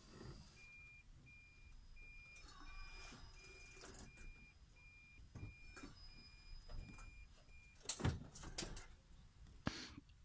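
A Toyota car's reverse-gear warning beeper as the car backs up slowly: a faint, single high beep repeating about every 0.7 seconds, about a dozen times, stopping about eight seconds in. A couple of sharp knocks follow near the end.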